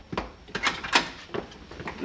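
A wooden front door being unlatched and pulled open: a few sharp clicks and knocks, the loudest about halfway through.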